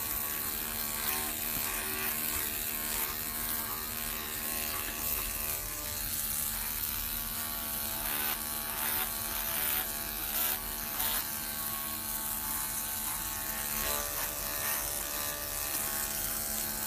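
Electric dog-grooming clippers with a very short #40 blade running as a steady buzz while cutting through a thick felted mat of hair.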